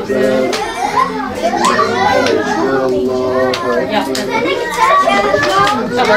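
Several voices chattering over one another, children's voices among them, with a steady low tone underneath and a few sharp clicks.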